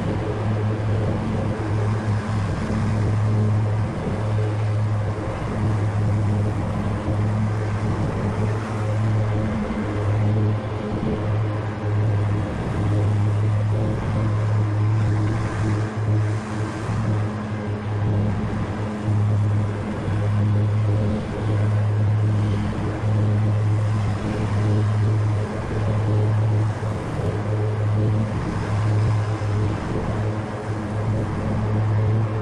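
Grasshopper 125V61 zero-turn riding mower running while cutting grass: a steady low engine drone that holds one pitch, with brief dips in level every few seconds.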